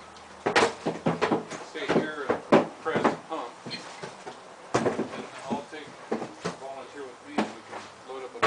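Indistinct voices of people talking, broken by a few sharp knocks, the first about half a second in and another near five seconds.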